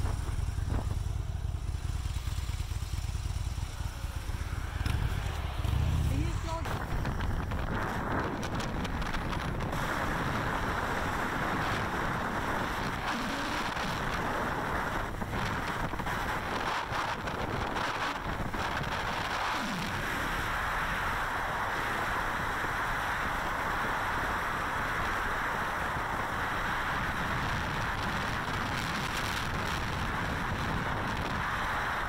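Harley-Davidson Super Glide V-twin motorcycle engine running at low speed, then steady wind and road noise as the bike rides along at speed from about seven seconds in.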